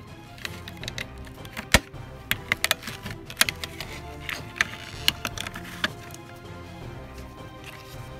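Scattered sharp plastic clicks and snaps as a smoke detector's circuit board is pried free of its plastic housing with needle-nose pliers, the loudest about two seconds in, over steady background music.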